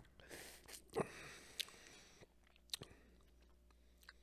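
Faint mouth sounds of someone tasting a sip of beer: breathy exhales and lip smacks. Several sharp clicks come through, the loudest about a second in, among them the glass mug knocking down onto a wooden coaster.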